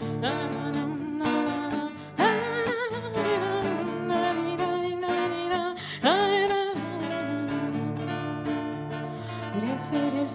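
A woman singing long, wavering held notes to acoustic guitar accompaniment. Her voice takes up a fresh note about two seconds in and again about six seconds in.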